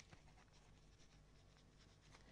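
Near silence, with a couple of faint clicks right at the start.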